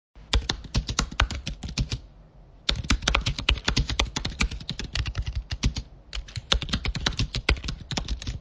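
Computer keyboard typing: rapid runs of key clicks, pausing for under a second about two seconds in and briefly again around six seconds.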